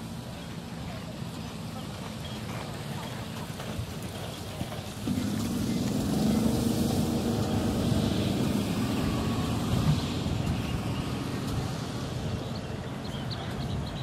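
A motor vehicle engine running close by. It gets suddenly louder about five seconds in and eases off several seconds later, over steady outdoor background noise.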